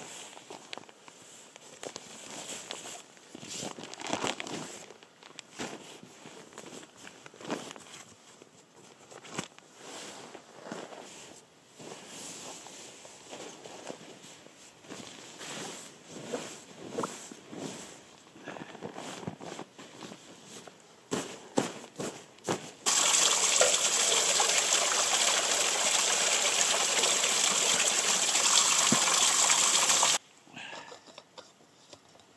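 Nylon bivy bag and sleeping bag rustling and crinkling in irregular bursts as they are handled and laid out. About 23 seconds in, a steady, loud rushing noise starts abruptly, holds even and cuts off suddenly at the end.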